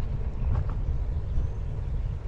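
Wind buffeting the microphone of a helmet-mounted camera on a moving bicycle, an uneven low rumble.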